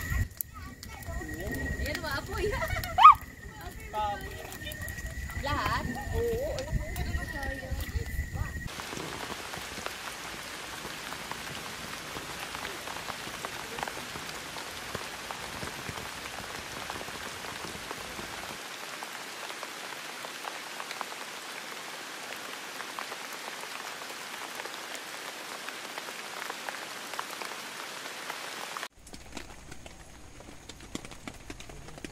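Voices around a campfire with one sharp, loud knock about three seconds in; after about nine seconds this gives way to steady rain falling on a tent, heard from inside.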